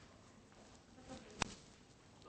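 Quiet room tone in a large hall, broken by a single sharp click about one and a half seconds in, just after a faint murmur.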